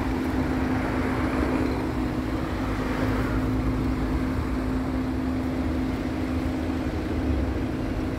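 City street traffic noise with a steady low hum.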